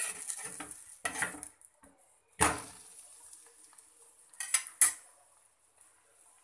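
Steel spatula scraping under a bread omelette in an iron frying pan and flipping it, with a loud clatter against the pan about two and a half seconds in and two sharp metal clicks near five seconds. A faint frying sizzle runs underneath.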